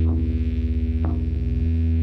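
Rock backing track with the guitar part removed: a loud low bass note held through, throbbing rapidly for most of its length, with a few drum hits, one about a second in.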